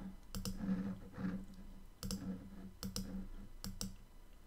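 Computer mouse clicks, four in all spread across the few seconds, most heard as a quick double tick of press and release, over a faint steady hum.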